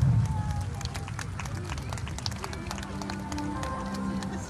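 The rumble of fireworks bursts fading out in the first second, followed by scattered sharp pops and crackles from the display, under music and crowd voices.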